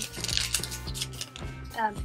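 Foil Pokémon trading-card booster pack crinkling as it is gripped and handled, over steady background music.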